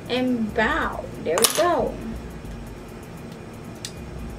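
A woman's voice for about two seconds, short speech the recogniser did not write down, then quiet room tone with a faint click near the end.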